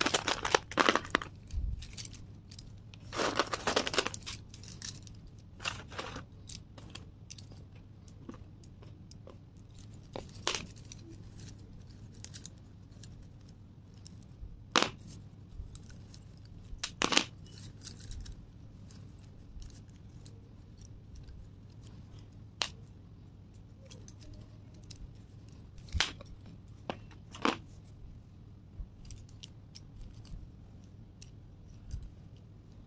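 Slate pencils clattering and rattling against each other as hands scoop and gather them in a tray, dense at the start and again around three to four seconds in. After that only occasional single sharp clicks as pencils knock together.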